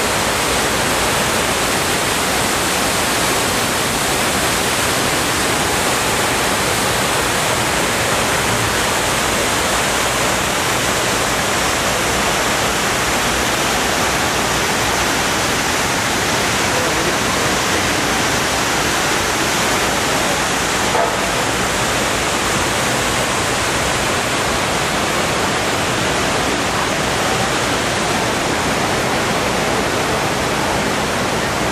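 Steady rushing of the 9/11 Memorial reflecting pool's waterfall, water pouring down the pool walls in an even, unbroken wash. A single brief click about two-thirds of the way through.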